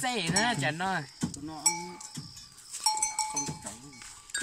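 A cowbell clinks twice, each a short clear ringing tone, about one and a half and three seconds in, with a few light knocks. A voice is heard in the first second.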